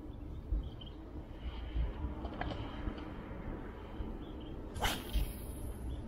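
Outdoor rumble of wind and camera handling, with a few faint clicks and a brief rushing hiss about five seconds in.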